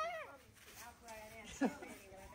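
Faint voices of children and adults, with a short high call that falls in pitch about one and a half seconds in.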